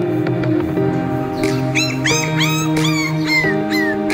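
A puppy whimpering, a quick run of about eight short high cries in the second half, over steady background music.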